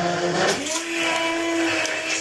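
A small motor running with a steady whine over a rush of air, its pitch wavering a little.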